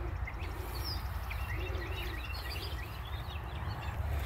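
Small songbirds chirping and twittering in quick short notes, busiest through the middle, over a steady low rumble.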